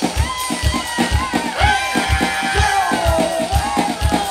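Live band music: a singer's melody over a fast, steady drum beat of about three beats a second, with guitar.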